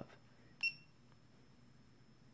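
Snap-on digital torque wrench giving one short, high electronic beep as a button on its keypad is pressed.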